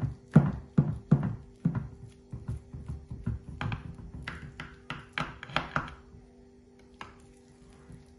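Kitchen knife cutting through a layer of raw kafta in a glass pie dish, the blade thunking and tapping on the glass bottom in a quick, irregular run of strokes that thins out after about six seconds.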